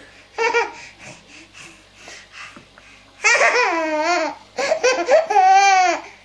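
Baby laughing: a short burst of laughter about half a second in, then quieter giggles, then long, loud peals of belly laughter with wavering pitch from about three seconds in, with a brief break in the middle.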